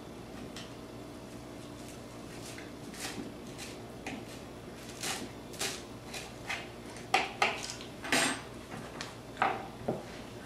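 A knife chopping cilantro: irregular sharp knocks, sparse early and coming thicker and louder in the second half.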